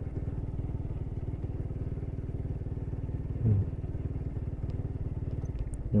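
Motorcycle engine running with a steady, even low pulse as the bike is ridden.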